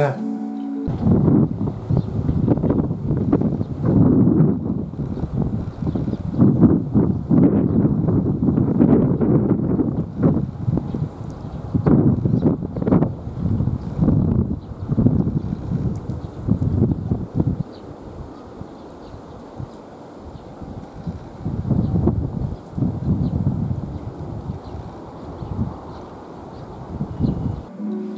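Wind buffeting an outdoor camera's microphone in rough gusts, strongest for the first two-thirds, then easing, with a shorter surge again near the end.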